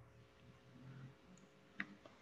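Near silence: room tone over a video call, with one faint short click near the end.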